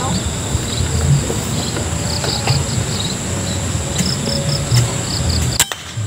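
Crickets chirping in short repeated pulses over a steady high insect hum, with a low rumble of wind or handling. Near the end comes a single sharp crack: a PCP air rifle shot that hits the bird.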